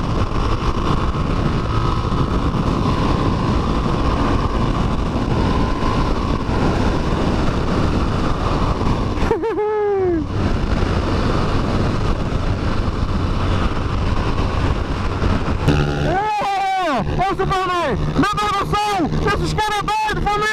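Motorcycle riding at road speed, heard from the rider's position: steady engine and rushing wind noise. The sound dips briefly about halfway. In the last few seconds a series of rising-and-falling pitched sounds comes over it.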